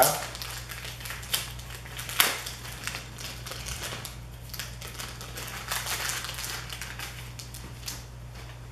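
Clear plastic bag crinkling and rustling as a camera strap is worked out of it, with a few sharper crackles, the loudest about two seconds in, over a steady low hum.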